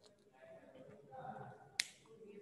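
A single sharp click about two seconds in as a whiteboard marker is handled in the hands.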